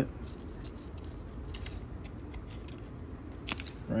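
Alcohol prep pad packet being torn open and the pad pulled out: faint, scattered crinkles and crackles of the foil-paper wrapper, with a sharper cluster about three and a half seconds in.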